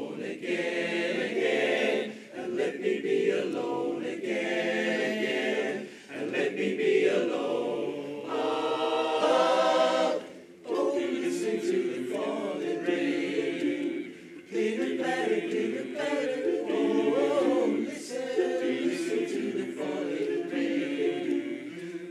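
Men's barbershop chorus singing a cappella in close harmony, in phrases broken by short breaths.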